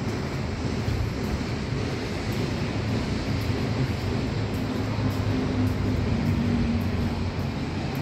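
Steady low rumble of outdoor traffic noise. A faint droning tone rises in the middle and fades again.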